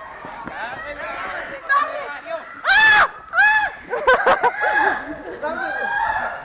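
Several people shouting and screaming while running from pursuers, with two loud, high-pitched screams close together about three seconds in, amid excited overlapping voices.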